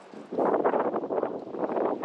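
Wind buffeting the camera's microphone: a loud, uneven rushing noise that starts about a third of a second in.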